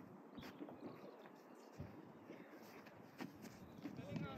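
Near silence: faint open-air ambience with a few faint, short knocks.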